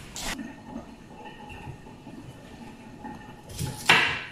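Kitchen work sounds: a short rustle just after the start, then quiet handling, and a sharp knock on a wooden cutting board near the end as broccoli is set down and a knife starts cutting it.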